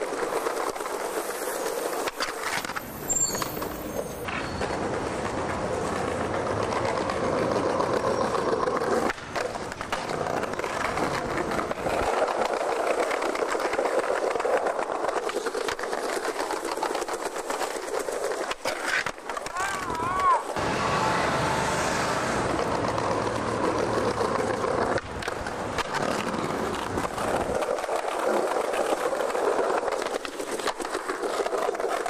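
Skateboard wheels rolling steadily over a concrete sidewalk, with a few sharp knocks along the way.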